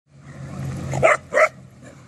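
A dog barking twice in quick succession about a second in, over a steady low hum.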